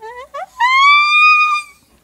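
A woman's singing voice sliding steeply up from a held sung note into a loud, high sustained note that lasts about a second and then stops.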